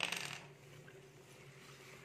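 A short rustle of notebook paper as a page is lifted and turned, right at the start and dying away within about half a second, followed by a faint steady low hum.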